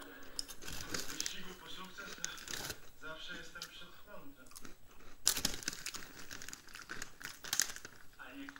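Television dialogue played through a TV set's speaker, broken by sharp crinkling and rustling noises several times, the loudest about five seconds in and again near the end.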